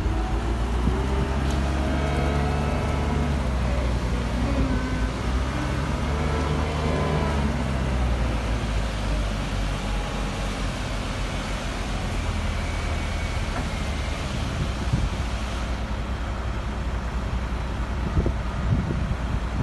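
CAT 906H wheel loader's diesel engine running, with a whine that rises and falls several times over the first eight seconds, then running steadily as the loader drives.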